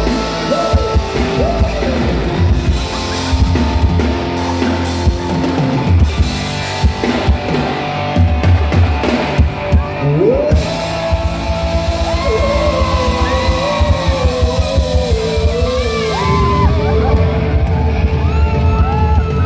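Live band music with electric guitar and drums. About ten seconds in, a single long melody line slides up and is held, wavering, over the band.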